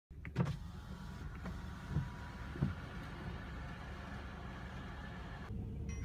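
Steady low hum inside a parked car's cabin with the engine running, with a higher even hiss over it that stops near the end. There are three soft knocks, the first about half a second in.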